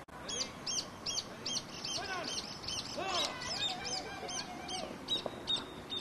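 A bird calling over and over in a fast series of short, high notes, about four a second. Fainter distant shouts sound beneath it.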